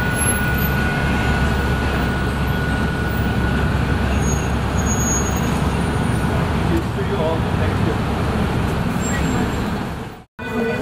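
Steady city street traffic noise with a deep rumble of heavy vehicles, and a thin steady whine in the first four seconds.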